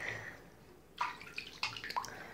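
Bathwater splashing and sloshing in a tub as a rubber ball is moved through it: the water settles after the first half second, then a few sharp splashes come about a second in and near the end.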